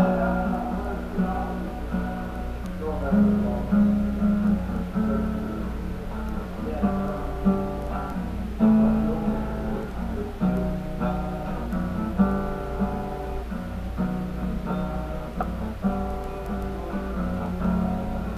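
Acoustic guitar strumming chords in an instrumental passage, the chords changing every second or so, over a steady low hum.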